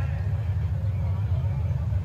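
A steady low rumble of background noise, picked up by a rally's open-air podium microphone between spoken phrases.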